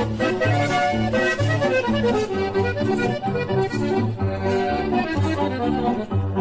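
Instrumental norteño music: a button accordion plays the melody over a steady, evenly pulsing bass beat, with no singing.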